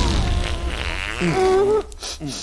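Cartoon fart sound effect: a long, buzzing rasp that fades out after about a second, with a short pitched tone bending up and down near the end.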